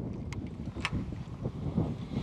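Wind rumbling on the microphone, with two small sharp clicks, the first about a third of a second in and the second just before a second in, as the plastic cap of a garlic-scent bottle is twisted open.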